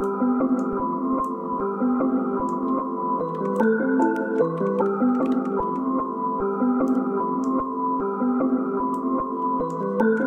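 A chopped melody loop of sustained synth-keys chords playing back, run through Gross Beat, reverb and a ping-pong delay. The four-bar phrase repeats about every six and a half seconds.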